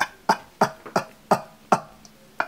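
A man laughing in short, breathy puffs, about three a second.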